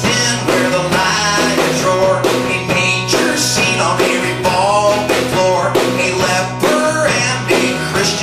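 Live band music: an acoustic guitar strummed in a steady rhythm together with an electric guitar, in a passage between sung lines.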